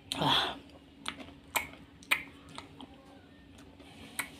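Small flat spoon scraping and tapping inside a paper ice cream cup as ice cream is scooped, giving sharp clicks about twice a second. A brief, louder noisy sound comes right at the start.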